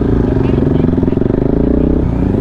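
Motorcycle engine running steadily at an even pitch while riding along.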